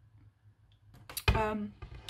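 A woman's short closed-mouth 'mm' after swallowing a gulp of green smoothie, her reaction to its strong taste, about halfway through. A few small clicks come just before and after it.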